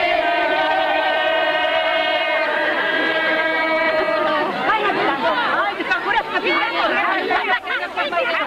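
A group of women singing a traditional Greek choral-dance song together, holding a long drawn-out note that ends about four and a half seconds in. Crowd chatter follows.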